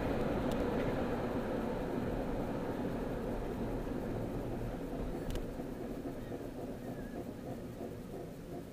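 Road and engine noise inside a moving car's cabin: a steady low rumble that fades gradually as the car slows. There is a single faint click about five seconds in.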